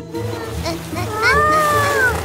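Cartoon background music with a steady, evenly pulsing low beat. A little over a second in, a single high, drawn-out voice-like cry rises and falls over it.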